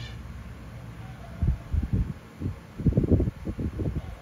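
Irregular low thumps and rumbling from a hand handling the recording phone near its microphone, starting about a second and a half in and growing denser toward the end.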